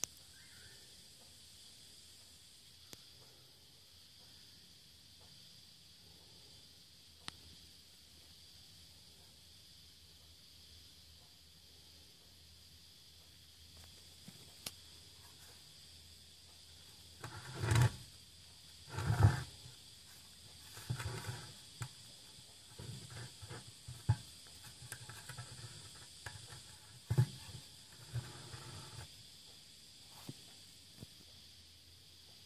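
Faint room tone with a few small clicks for the first half, then from a little past the middle a run of handling noise: rubbing and bumping as the camera is brought in close over the plastic distributor cap. The two loudest bumps come close together, followed by smaller, irregular ones.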